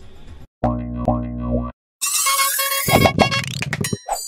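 Short outro music sting made of cartoon-style sound effects. About half a second in comes a buzzy low tone lasting about a second; after a brief gap, a rising sweep with ringing tones follows.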